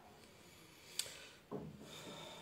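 Faint handling noise: one sharp click about a second in, then a short soft rubbing sound about half a second later.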